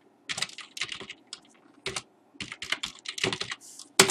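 Computer keyboard typing in short runs of keystrokes with brief pauses between them.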